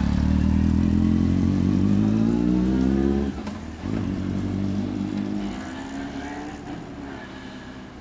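Honda CB1300 Super Bol d'Or's inline-four with an Akrapovic exhaust pulling away. The engine note rises through first gear, drops at a gear change about three seconds in, climbs again in the next gear, then fades as the bike rides off.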